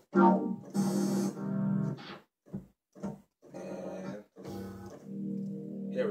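A synthesizer keyboard sound being tried out in chords: a short stab, a longer chord with a breathy hiss on top, two brief hits, then held chords, with short gaps between them.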